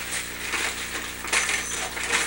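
A sheet of paper rustling and crinkling as it is handled, loudest in a short burst about a second and a half in, over a low steady electrical hum.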